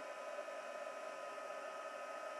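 Craft heat gun running steadily, an even fan hiss with a faint steady whine, held close to dry wet bicarbonate-of-soda paste.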